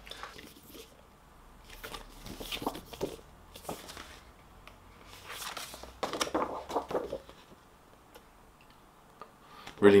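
Paper rustling in several short bouts as large printed sheets and booklet pages are handled and turned, then a quiet stretch; a man starts speaking at the very end.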